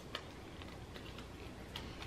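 Faint, scattered small clicks from handling a packaged ribbon bow and its card backing, with low room tone between them.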